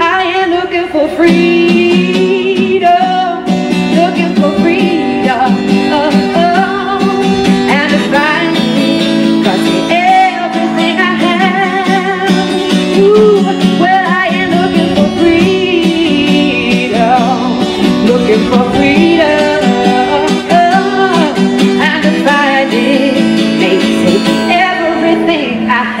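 A live band song: a woman sings with vibrato over strummed acoustic guitar, amplified through a PA system.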